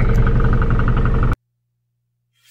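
A car's engine idling, heard from inside the cabin as a steady hum, which cuts off abruptly a little over a second in and leaves silence.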